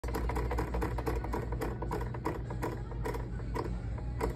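Prize wheel spinning down, its pointer clicking against the pegs around the rim: the clicks come fast at first and slow to a few widely spaced ticks near the end.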